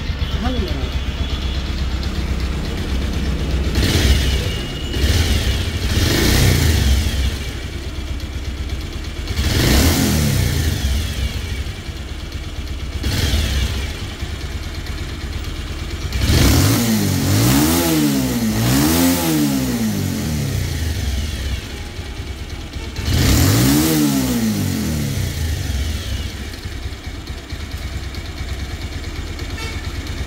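Bajaj Pulsar 180's single-cylinder air-cooled engine idling and blipped about seven times, each rev rising and falling back to idle, with a quick double rev a little past the middle. The engine is being run up after its balancer was replaced, to check for the crack sound and vibration.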